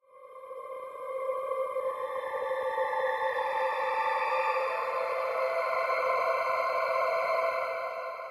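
Arturia Pigments software synthesizer playing its 'Frozen Choir' drone preset: a held chord of several steady tones that swells in over about the first second and a half, sustains, and begins to fade near the end.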